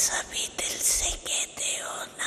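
An elderly woman speaking softly into microphones in short, breathy, whispery phrases with strong hissing consonants.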